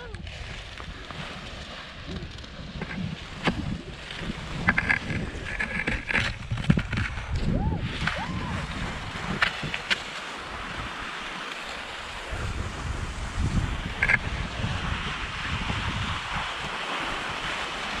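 Wind buffeting the microphone in a steady low rumble, with scattered light clicks and scrapes.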